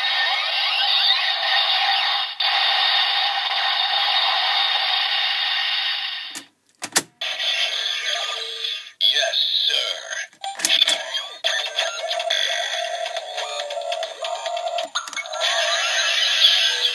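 Bandai DX Ghost Driver toy belt playing its electronic standby music and Japanese voice calls through its small, tinny speaker. About six and a half seconds in the sound breaks off, and after a few plastic clicks the DX Mega Ulorder plays its own music and voice calls as an Eyecon is worked in it.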